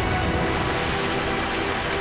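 Water gushing out of a smashed glass tank and splashing across a floor, a steady rush of water under held notes of background music.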